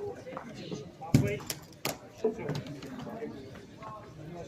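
Chatter of voices, with two sharp knocks, the first and loudest a little over a second in and the second just under two seconds in.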